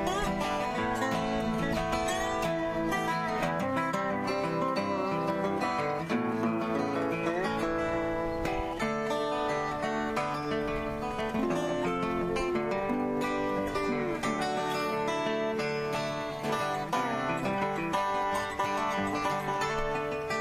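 Acoustic guitar and a lap-played slide guitar (a dobro-style resonator guitar played with a steel bar) playing an instrumental tune together, with the slide notes gliding up and down now and then.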